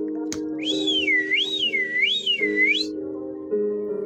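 A beat with steady low held chords plays. Over it, a high whistle warbles up and down about four times for a couple of seconds, after a sharp click near the start.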